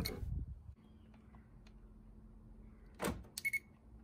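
A car door lock actuator clunking once as the circuit probe energizes it, about three seconds in, followed by a quick cluster of clicks and a brief high beep.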